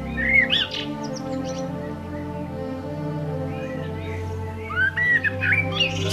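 A songbird chirping in two short bursts of quick, curving notes, one just after the start and one near the end, over background music of long held notes.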